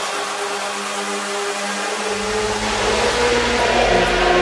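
Tech house mix in a breakdown with the drums dropped out: a loud white-noise swell over held synth notes, with a deep bass note coming in about halfway through.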